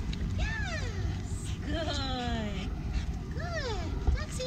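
Leashed dogs reacting to each other with three drawn-out yelping, whining barks that rise and then fall in pitch, the longest one sliding down for about a second; dog-to-dog reactivity.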